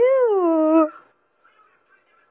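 A single drawn-out high vocal call with a clear pitch, rising then falling and levelling off, ending just under a second in.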